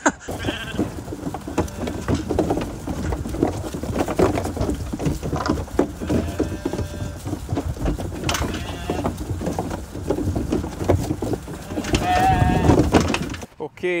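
Lambs bleating several times, the loudest calls near the end, over a constant rush of wind buffeting the microphone and scattered knocks.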